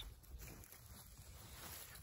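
Near silence: faint outdoor background with a low rumble and a few soft ticks.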